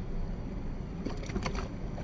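Water sloshing and a light splash as a hand-held freshwater drum is let go and kicks away in shallow, moving water, over a steady low rumble. A few faint splashes come about a second in.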